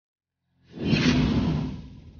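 A loud whoosh that comes in about half a second in, peaks quickly and fades over about a second.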